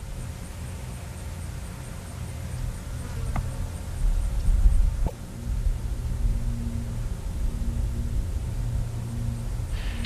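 Twin sonic booms from Space Shuttle Endeavour on its descent: two short sharp cracks about a second and a half apart over a deep rumble that swells between them, with a steady low hum underneath.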